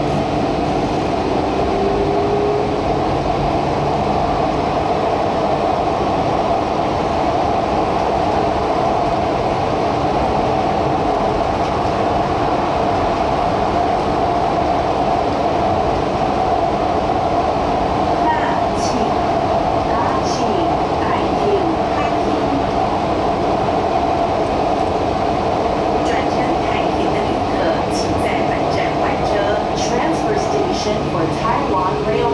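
Taichung MRT Green Line metro train running along the track, a steady rumble of wheels on rail heard from inside the car. A faint rising whine near the start, and light scattered clicks in the second half.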